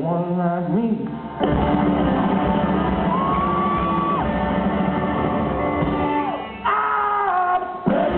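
Live rock band playing: electric guitars, bass and drums, with the lead singer's voice over them. The music drops briefly and comes back in hard about a second and a half in.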